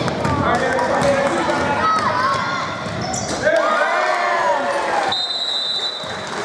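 A basketball is dribbled on a hardwood gym floor amid sneaker squeaks and shouting voices. Near the end, a referee's whistle blows one steady note for about a second.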